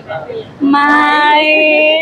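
A person's voice holding one long, loud sung note for over a second, sliding up slightly at the start and then staying steady.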